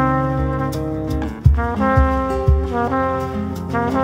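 Trumpet playing long held melody notes in a live Latin jazz band, moving to a new note about a second and a half in, over guitars and a cajón keeping the beat.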